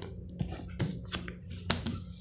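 Tarot cards handled in the hands: a few light, separate taps and flicks as cards are drawn off the deck, the sharpest near the end.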